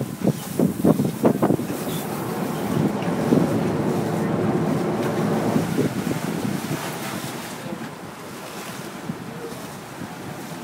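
Sportfishing boat's engines running with water rushing and churning at the stern, and wind buffeting the microphone. There are a few brief louder bursts in the first second and a half, and the wash eases off after about seven seconds.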